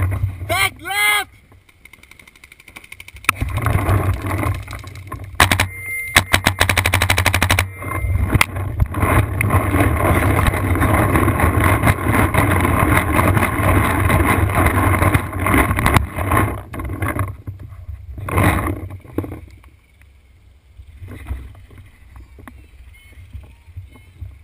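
Paintball marker firing rapid strings of shots: a short burst about five and a half seconds in and a longer one about a second later. Voices are heard around the shooting.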